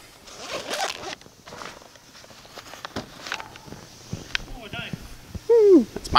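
A zipper on a fabric gear bag pulled open, followed by rustling and light clicks as things are taken out. Near the end a short vocal sound falls in pitch.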